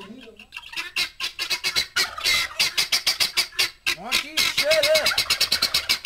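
Penned poultry calling in loud, rapid, harsh repeated notes, several a second. The calls are sparse at first and become a dense chatter about two seconds in.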